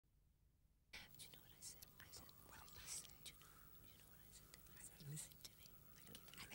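Faint whispering that begins about a second in, over a low steady hum.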